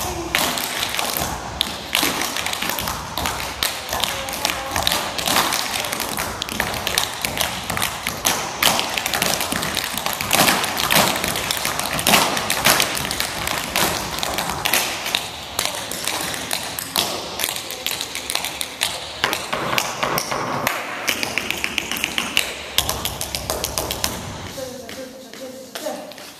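Tap shoes of several dancers striking a wooden stage floor in fast, dense rhythms, with heavier heel thuds among the taps. The tapping thins out near the end as the dancers stop.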